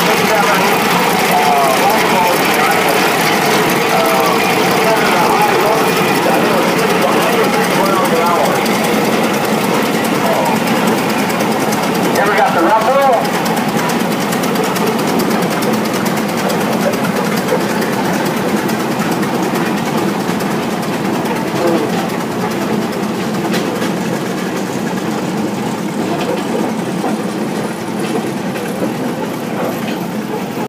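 Large early gasoline prairie tractors running steadily as they roll past in parade on steel wheels, getting quieter toward the end as the last one moves off. Voices are heard over the engines.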